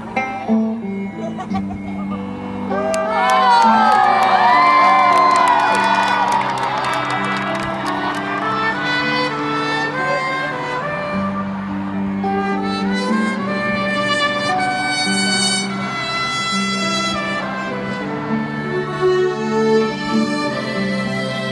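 Live band with strings playing a song's instrumental intro through a stadium PA, sustained chords under a slow stepping melody. The crowd cheers and screams over it, loudest from about three to seven seconds in.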